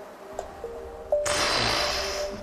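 Background suspense music made of quiet held tones. About a second in, a loud rushing noise sound effect cuts in and runs on.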